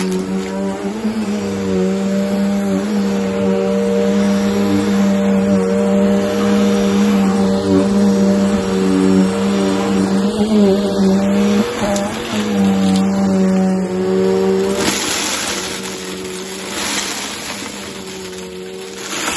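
Bissell upright vacuum cleaner running on a shag rug: a steady motor hum with a hiss, its pitch wavering slightly as it is pushed back and forth. About fifteen seconds in the hum drops away and the sound becomes hissier and a little quieter.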